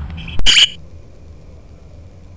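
A cheap kids' toy digital camera giving its button-press sound: a sharp click followed by a short, high electronic chirp.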